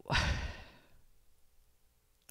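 A man sighs once, a breathy exhale of under a second that fades away.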